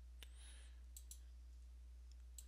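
A few faint computer mouse clicks, one early and two in quick succession about a second in, over a steady low electrical hum.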